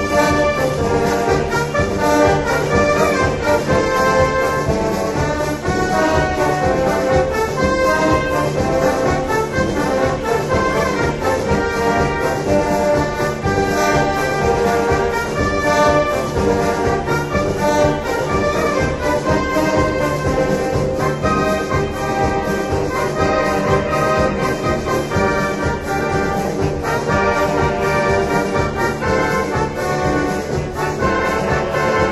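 Instrumental band music with brass carrying sustained melody lines over a steady, even drum beat.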